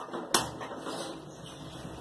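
A gas stove's control knob turned and lit, giving one sharp click about a third of a second in, followed by a low steady hiss.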